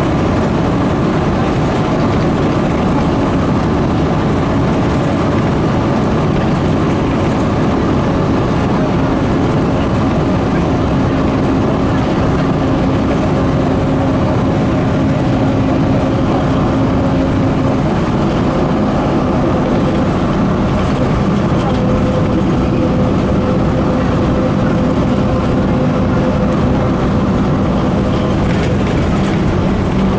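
Inside a LAZ-695N bus under way: the steady drone of its engine along with road noise. The engine note changes pitch a little past halfway.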